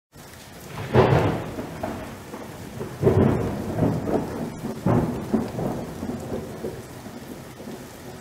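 Thunderstorm: a steady hiss of rain with three rolls of thunder, about one, three and five seconds in, each dying away slowly.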